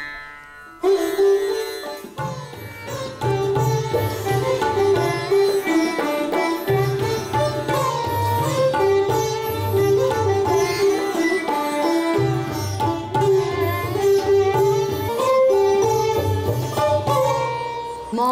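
Indian classical ensemble music: two sitars, a violin and tabla playing together. The music comes in strongly about a second in, and the tabla's low strokes join about a second later.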